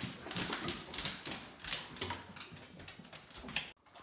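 A Great Dane's claws clicking and tapping on a hardwood floor as it walks about: a run of irregular clicks.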